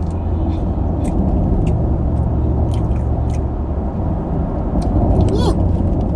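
Steady low rumble of a moving car's road and engine noise, heard inside the cabin while driving. Small wet mouth clicks of chewing sit on top.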